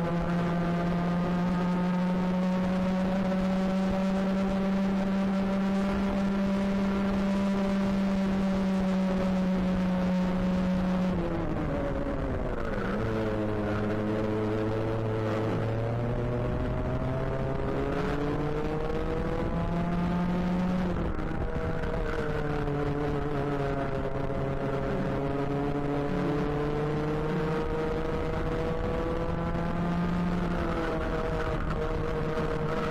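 Racing kart engine heard from onboard at full throttle. It holds a high, steady note for about eleven seconds, drops sharply as the driver lifts for a corner, then climbs again twice as it accelerates out through the following bends.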